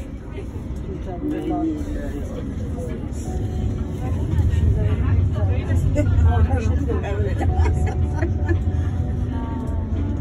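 Low running rumble of a city tram heard from inside, swelling louder about four seconds in and easing slightly near the end, with indistinct chatter of other passengers over it.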